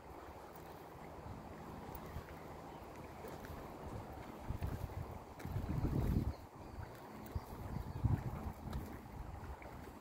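Wind blowing across a phone microphone, buffeting it in gusts, strongest a little past the middle and again briefly near the end.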